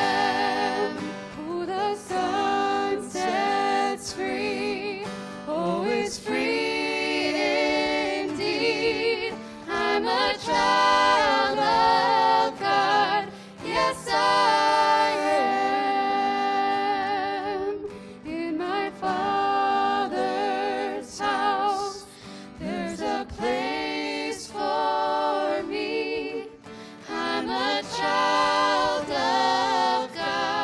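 Worship team of male and female voices singing a gospel song together in harmony through microphones, with acoustic guitar accompaniment. The singing comes in sustained phrases with vibrato and short breaks between them.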